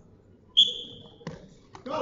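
Referee's whistle blown once, a single short high blast that starts the wrestlers from the referee's position. A short knock follows about a second in.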